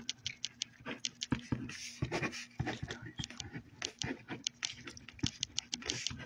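Quick, irregular clicks and taps, several a second, over a faint steady hum.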